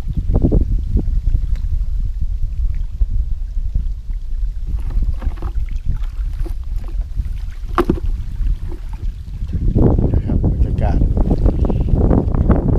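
Wind buffeting an outdoor camera microphone in a steady low rumble, with scattered small clicks and rustles of handling; the rumble grows louder for the last couple of seconds.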